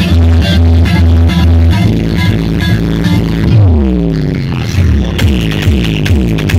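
Loud electronic dance music played through a stacked DJ speaker system, with a heavy repeating bass beat. About two seconds in the beat breaks, a deep sweep slides downward, and near the end short bass notes that fall in pitch come back in a steady rhythm.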